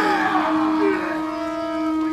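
A traditional Māori horn blown in one long, steady note, with voices calling out over its start.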